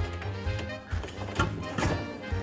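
Background music, with several knocks and scrapes of a steel beer keg being shoved into a kegerator too tight for it. The last two knocks are the loudest.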